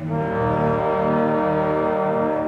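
Opera orchestra's brass sounding a loud chord that enters sharply and is held steady.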